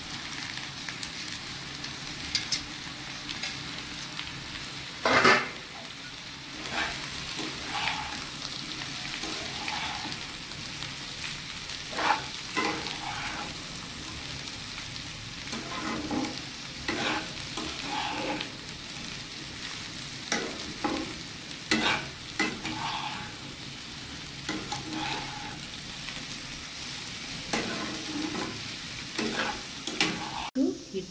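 Flattened rice (chira) and vegetables sizzling in a frying pan as they are stirred and tossed with a spatula, the spatula scraping and knocking against the pan at irregular intervals. The sharpest knock comes about five seconds in.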